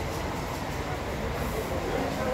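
Busy street ambience: a steady low rumble with faint voices in the background.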